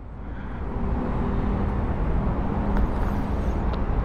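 Low, steady rumble of a running vehicle engine with a faint hum in it, building up over the first second and then holding steady.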